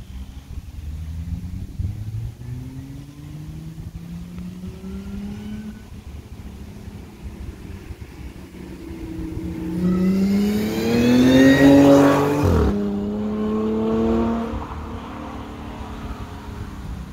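Audi S4's supercharged 3.0-litre V6 through an AWE Touring exhaust, accelerating toward the microphone with its pitch climbing. It is loudest as it passes about twelve and a half seconds in, where the note drops sharply and then fades as it moves away.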